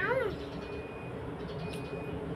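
A single short meow-like animal cry that rises and falls in pitch, right at the start, over a steady low background rumble.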